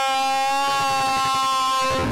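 A loud, held tone at one steady pitch with a dense stack of buzzy overtones, typical of a meme-edit sound effect laid over a distorted picture; it cuts off suddenly at the end.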